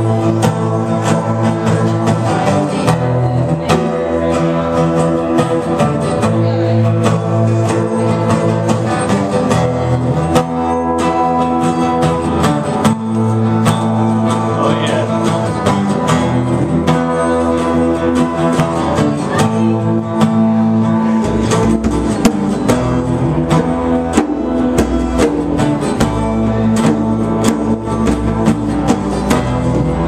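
Acoustic guitar strummed in a steady rhythm, playing a song with other instruments. About two-thirds of the way through, a deep low part joins in.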